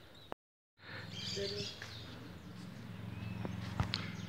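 Birds chirping with short whistled calls over a faint steady low hum, after the sound drops out completely for a moment shortly after the start.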